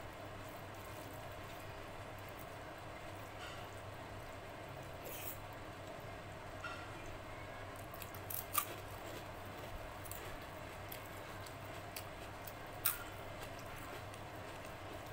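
Hand-eating sounds: fingers mixing curry into rice with faint wet clicks, and sharp crunches of a fried rice crisp being bitten, the loudest about eight and a half seconds in and again near the end, over a steady low background hum.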